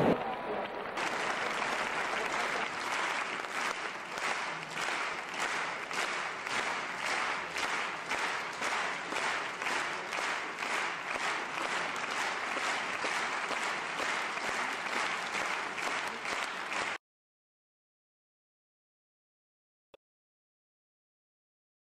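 Large crowd clapping together in unison, a steady rhythm of claps; it starts about a second in and cuts off suddenly near the end.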